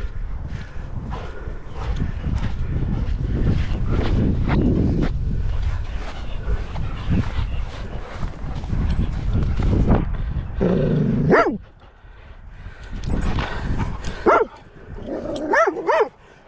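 Dogs barking in a few short bursts while playing, the barks coming in the second half, after a long stretch of low rumbling noise.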